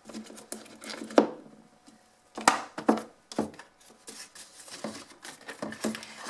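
Small handling noises: irregular light clicks, taps and rustles as a little essential oil bottle and cotton wool are handled and put back, the sharpest clicks about a second in and again at two and a half seconds.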